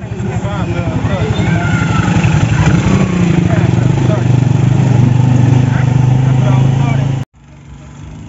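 Honda motorcycle engine running as the bike rides along a street, a steady low engine note. It cuts off suddenly near the end.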